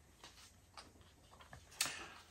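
Faint ticks and light rustles of paper watch-band packaging being handled, with one sharper, louder rustle near the end.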